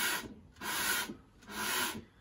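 A wooden Rogers drum shell turned by hand on a router table for a final full rotation of its bearing edge, rubbing across the table top in three short scraping strokes, about one a second.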